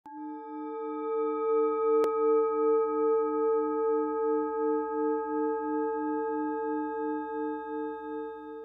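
Struck singing bowl ringing on, its lowest tone wavering about three times a second over steady higher overtones. A single short click sounds about two seconds in.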